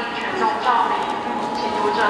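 A voice speaking over a public-address system, echoing in a large hall, with footsteps of people walking.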